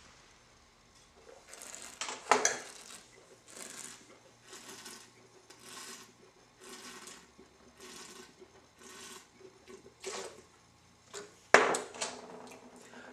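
Wine tasting by mouth: red wine sipped and worked around the mouth with a string of short hissing breaths about once a second, then spat into a spit bucket. A sharp knock near the end as the bucket is set back down on the stone counter.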